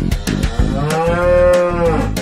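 A long cartoon-cow moo beginning about half a second in, its pitch arching gently, over bouncy children's backing music.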